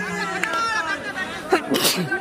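Several people talking at once, chatter of players and onlookers, with a short hissing burst near the end.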